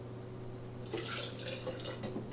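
Simple syrup being poured from a small glass jug into a blender cup of blackberries, the liquid splashing in from about a second in.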